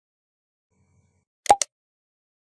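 Silence, then about one and a half seconds in a quick double pop with a short pitched tone: a click sound effect of a like-and-subscribe button animation.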